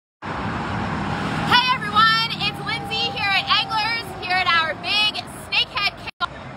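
Indistinct chatter of voices over a steady low rumble like road traffic.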